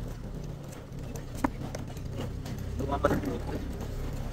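Street ambience in a night market lane: a steady low hum, one sharp click about a second and a half in, and a brief voice near three seconds.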